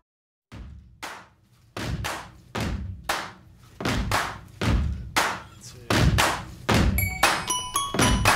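Background music: a new song begins after a brief silence with a steady pattern of percussive hits, about two a second. A bell-like mallet melody joins near the end.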